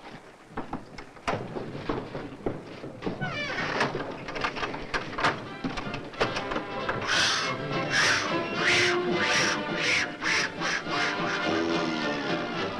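A man imitating a bird's cry in a run of short, harsh bursts about every half second, starting about seven seconds in, over orchestral film music. A few knocks come in the first seconds.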